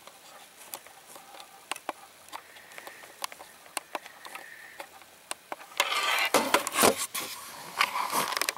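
Camera handling noise: the microphone being rubbed and knocked against clothing, with scattered sharp clicks and a louder stretch of rustling about six seconds in.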